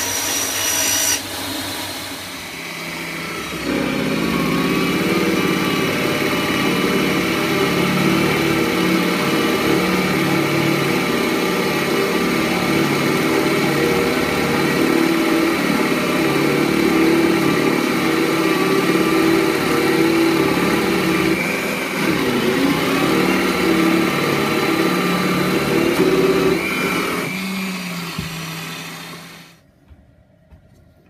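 A bandsaw cutting a pine board for about a second, then a bench drill press running steadily as a large cutter bores into pine. Near the end the drill press runs down and stops.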